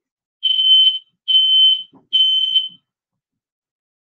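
Smoke detector alarm sounding three high beeps, each about half a second long. It is a nuisance alarm set off by cooking heat on the stove, with nothing burnt.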